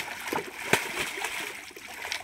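A big hooked rohu thrashing at the surface in shallow water, a quick irregular run of splashes, the loudest about three-quarters of a second in.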